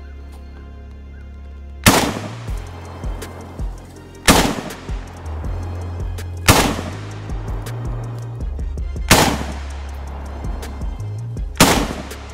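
Five single shots from a PSA AK-47 GF3 rifle in 7.62×39 mm, fired one at a time about two and a half seconds apart, each with a short echo. Background music with a steady bass line plays underneath.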